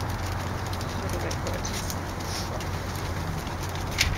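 Steady outdoor background hum and hiss, with a faint low bird call about a second in.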